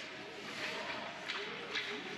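Ice hockey play on a rink: a steady hiss of skates on the ice with two sharp clicks in the second half, under faint spectator voices.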